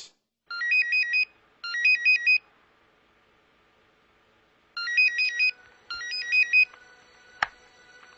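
Electronic phone ringtone ringing twice. Each ring is a pair of short beeping melodic phrases of quick stepping tones, with a pause between the rings. A single sharp click comes near the end.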